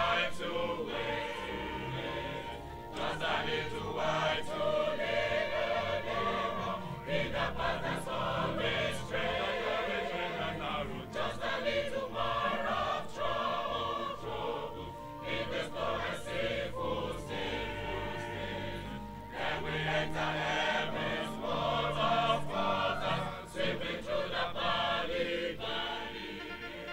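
Church choir singing a hymn together.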